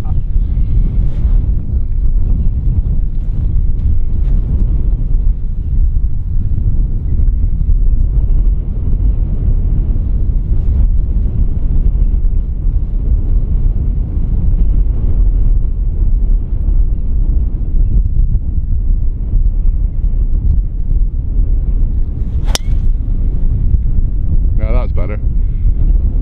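Wind buffeting the microphone, a steady low rumble throughout. About three-quarters of the way through comes a single sharp click: a golf club striking a teed-up ball.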